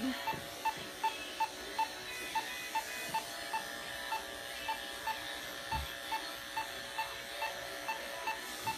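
An anesthesia monitor beeping steadily about two and a half times a second, the pulse beep of the sedated cat, over the steady hum of electric clippers shaving matted fur. A brief soft thump near the middle.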